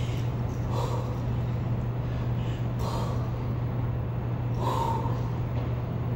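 A woman breathing hard during a barbell hamstring exercise: about four sharp, breathy exhalations spaced a second or two apart, over a steady low hum.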